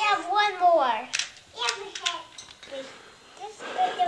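A high-pitched voice talking in the first second, then a few sharp claps.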